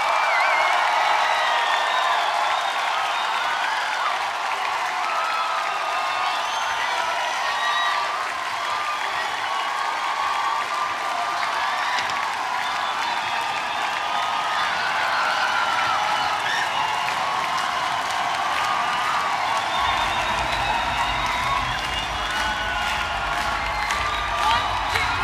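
Large concert crowd cheering, whooping and applauding. About twenty seconds in a low, steady bass beat from the band comes in under the cheering.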